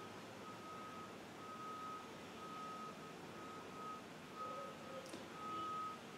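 Faint electronic beeping: a single steady high tone sounding on and off in uneven pulses of about half a second, over quiet room hiss.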